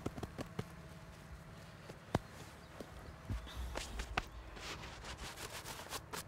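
Gloved hands pushing loose, crumbly field soil back over an opened maize seed row: scattered soft crackles and clicks of falling earth, with one sharper click about two seconds in and a brief low rumble a little past the middle.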